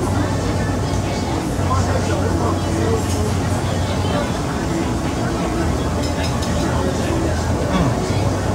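Restaurant room noise: a steady low hum with voices in the background and a few light clicks of tableware.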